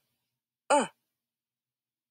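A voice saying a single short vowel sound, the short "oo" phonics sound, once and briefly.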